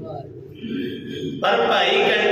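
A man's voice through a microphone: a short lull, then about one and a half seconds in he resumes in a chanted, intoned recitation rather than plain speech.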